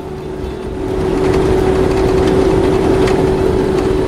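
Engine and road noise of a military convoy vehicle heard from on board, with a steady whine over a rough rumble, getting louder about a second in.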